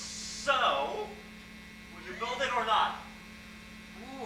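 Steady electrical mains hum, a constant low tone, under two short bursts of a person's voice, about half a second in and just past two seconds.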